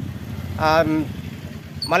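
A motor vehicle engine idling, a steady low running sound.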